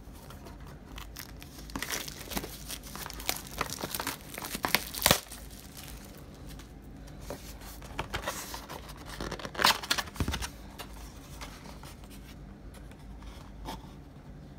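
Plastic shrink wrap being torn and crinkled off a sealed box of trading cards, and the cardboard box being opened: irregular crackles and rustles, loudest about five seconds and again nearly ten seconds in.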